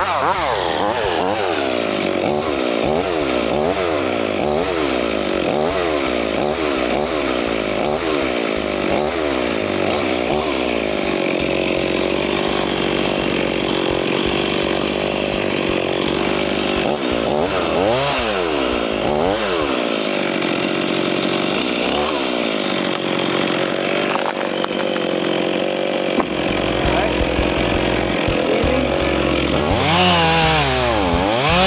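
Two-stroke Stihl chainsaw cutting through a small birch trunk, running loud at high revs. Its engine pitch dips and recovers over and over as the chain bites into the wood, then holds steady through a long stretch of the cut.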